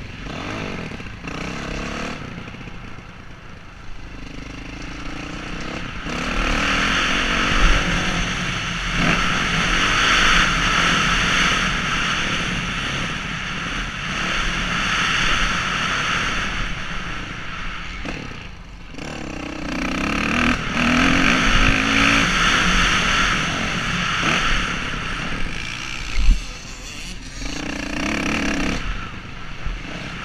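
Dirt bike engine, heard from the rider's helmet camera, revving hard along the track and backing off the throttle a few times: early on, about two-thirds of the way through and near the end. A couple of sharp knocks stand out, one about 8 seconds in and one about 26 seconds in.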